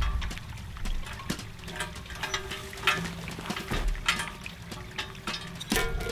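Scattered metal clicks and clinks from a steel target plate hung on chains from a metal frame being handled.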